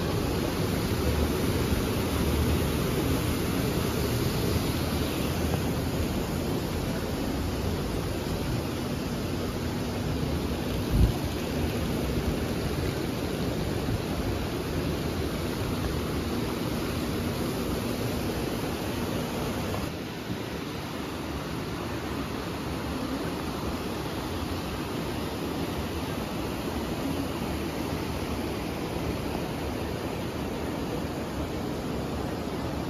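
Steady rush of a fast river flowing over a rocky bed, a continuous noise of rushing water. There is one brief thump about a third of the way in.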